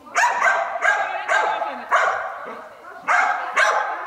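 A dog barking repeatedly, about six sharp barks in two quick runs, each ringing on with the echo of a large hall.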